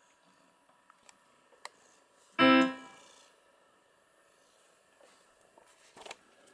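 Electronic keyboard sounding a single note about two and a half seconds in, pressed as a cat walks across the keys; the note fades within about half a second. A few faint clicks come before it.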